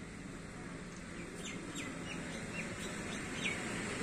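A small bird giving a series of about six short, falling chirps over a steady low outdoor background noise.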